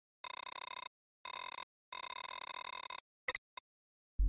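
Electronic interface sound effects of the eDEX-UI boot log: three bursts of a steady, buzzy beeping tone, the last about a second long, then two short blips near the end.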